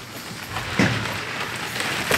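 Cardboard box and plastic bubble wrap rustling and crinkling as a wrapped surfboard is pulled out of its shipping box, with sharper scrapes about a second in and again near the end.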